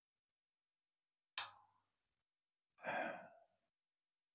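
A man's quiet sigh, a breathy exhale about three seconds in, preceded about a second and a half in by a brief sharp sound.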